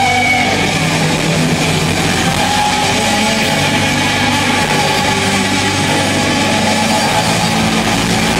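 Electric guitar played loud and distorted through an amplifier, with long held notes ringing over a dense, continuous wash of sound.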